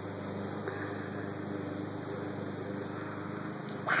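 Steady low machine hum, unchanging, with a faint hiss above it.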